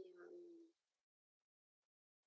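A voice holding a short, steady hum that fades out within the first second, then silence.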